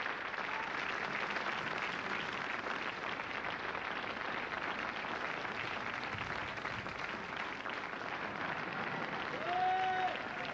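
Theatre audience applauding, a dense, steady clapping throughout. Near the end a single short pitched call stands out above the clapping.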